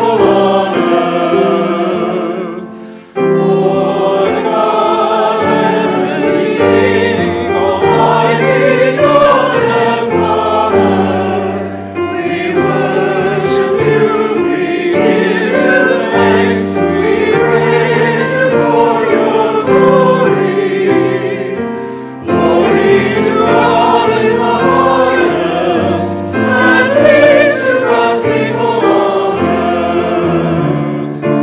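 Choir and congregation singing a hymn together, in phrases with brief breaks about 3, 12 and 22 seconds in.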